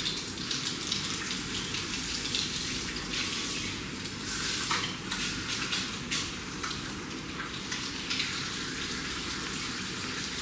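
Water spraying from a handheld shower head onto hair over a shampoo basin as it is rinsed: a steady hiss of spray and splashing, louder at moments.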